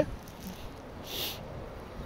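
Low, steady background of the 2003 Ford Mustang's 3.8-litre V6 idling, with a brief soft hiss about a second in.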